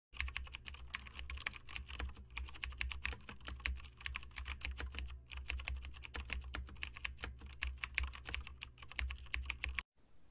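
Rapid, irregular keyboard typing clicks, several a second, over a low steady hum; they stop abruptly just before the end.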